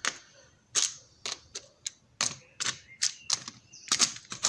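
Hard plastic cases of carbide lathe inserts knocking and clicking together as they are handled and stacked: about a dozen sharp, irregular clicks.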